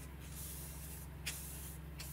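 Stiff bristles of a tint brush sweeping across paper: hissing brush strokes, with a sharp tick a little past halfway. A steady low hum sits underneath.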